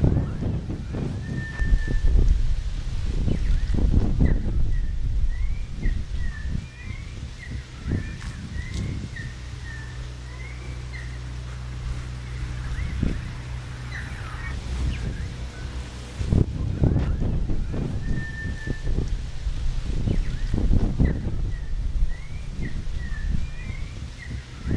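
Birds chirping again and again in short, quick calls over an uneven low rumble that rises and falls.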